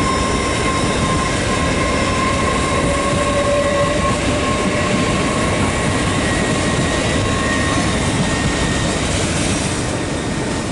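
LNER Azuma high-speed train (Hitachi Class 800-series) running past on the station tracks: a steady, loud rumble of wheels on rail with a thin high whine held over it.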